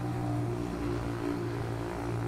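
A steady low motor hum at one even pitch.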